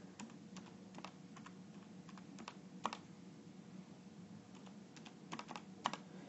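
Faint, irregular clicks of keys being pressed, about a dozen scattered taps, the loudest about three seconds in, over a low steady hum.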